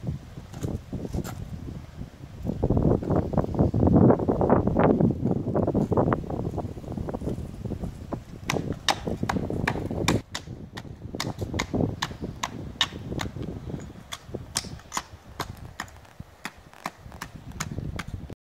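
A jumble of loud, busy sound for the first half, then a long run of sharp, irregular clicks or knocks, several a second, through the second half.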